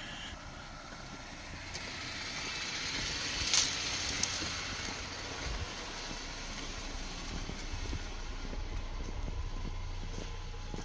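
Jeep Grand Cherokee Trailhawk running slowly on a wooden plank bridge, a steady low rumble that grows over the first few seconds, with one sharp clack about three and a half seconds in.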